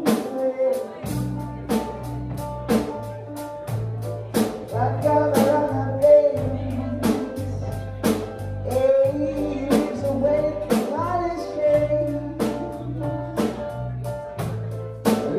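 Live band playing: a drum kit keeps a steady beat under bass, keyboard and guitar, with a voice singing.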